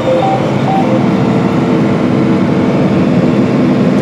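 Steady engine drone and running noise of a John Deere R4045 self-propelled sprayer travelling across the field at about 17 mph, heard from inside its cab.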